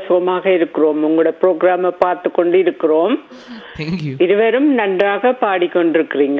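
A caller's voice coming through a telephone line, speaking in a continuous stream; it sounds thin, with no treble, as phone audio does.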